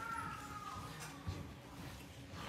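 Expectant hush in an auditorium just before a band's first note: low room noise with a faint steady hum, and a faint high squeal in the first second that slides slowly down in pitch.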